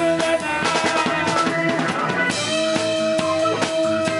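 Live band playing an instrumental stretch with no singing: a drum kit keeps the beat with bass drum and snare under held notes. A flurry of quick drum strokes comes between about one and two seconds in.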